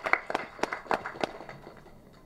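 Scattered hand clapping from an audience, a quick run of claps that thins out and dies away about a second and a half in.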